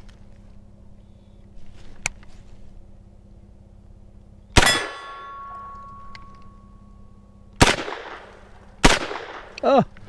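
Three gunshots from an HK SP5 9mm pistol: one about halfway through, then two more near the end about a second apart. After the first shot a steel target rings with a clear tone for about three seconds.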